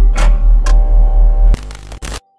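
Logo intro music: a loud deep bass pulsing about three times a second under held synth tones, with two sharp hits. About one and a half seconds in the music stops and a short glitchy hiss takes its place.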